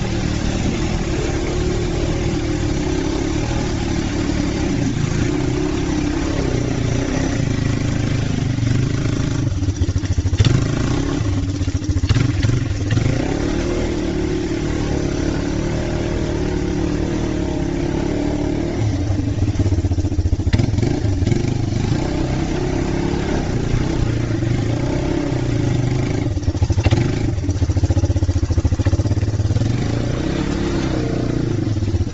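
ATV engine running and revving as the four-wheeler works through deep mud, the engine note rising and falling repeatedly with the throttle.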